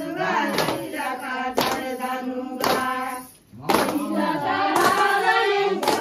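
Women singing a Chhattisgarhi Sua folk song in chorus, with the whole group clapping together about once a second to keep the beat. The singing breaks off briefly around three and a half seconds in, then picks up again with the claps.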